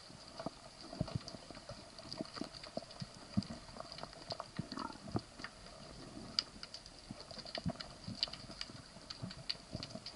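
Underwater ambience heard through a camera housing: a dense, irregular crackle of short clicks and knocks, over a faint steady high tone.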